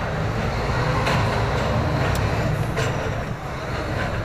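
Scania lorry's diesel engine running as the truck drives slowly along a street, heard inside the cab as a steady low rumble that swells slightly about a second in. A few faint clicks from the cab sound over it.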